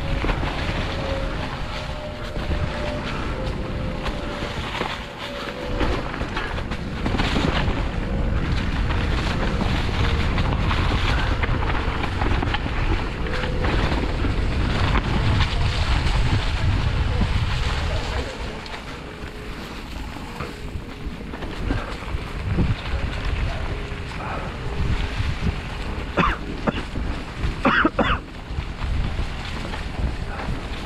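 Wind buffeting the microphone and tyre noise on a dry leaf-covered dirt trail as a mountain bike rolls downhill, louder and gustier through the middle. A faint steady tone runs through much of it, and a few sharp knocks sound near the end.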